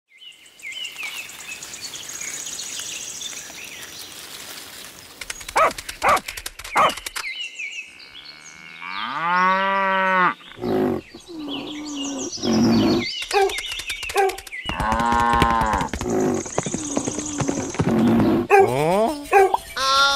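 Cattle mooing: two long, arching moos about nine and fifteen seconds in, with shorter animal calls between them. High bird chirps sound at the start and again near the end, and a few sharp clicks come about five seconds in.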